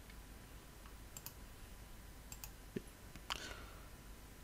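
Faint computer mouse clicks: two quick pairs of clicks about a second apart, then a soft knock and one more click near the end.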